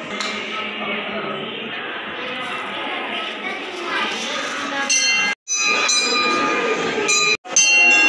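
Indistinct crowd voices with metal temple bells ringing. The bell tones grow stronger from about halfway through, and the sound cuts out briefly twice near the end.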